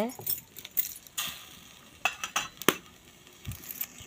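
A metal ladle clinking against an aluminium kadhai as a curry is stirred: a few separate sharp clinks over the first three seconds, then quieter.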